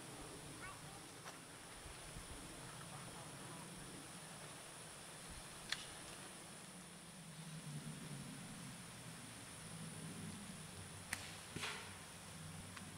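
Faint outdoor ambience with distant voices in the second half and a few sharp clicks: one near the middle and two close together near the end.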